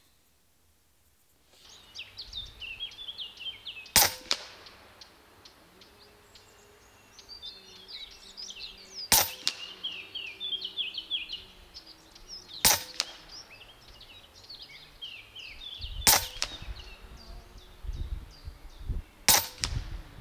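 Huben K1 .25 calibre PCP air rifle firing five sharp shots a few seconds apart, the first about four seconds in.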